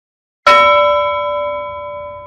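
A single bell strike about half a second in, ringing on in several steady tones that slowly fade.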